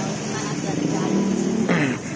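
Street noise: a steady hum of traffic with faint voices in the background, and a short voice sound falling in pitch near the end.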